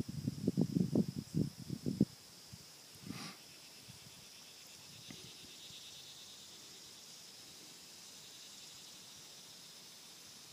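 Steady high-pitched drone of insects over a summer field. A quick run of about ten low thumps fills the first two seconds and is the loudest part, and a brief sweep comes about three seconds in.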